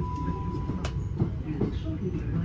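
Rumble of a moving passenger train heard from inside the carriage. A steady high beep sounds for most of the first second, ending with a sharp click.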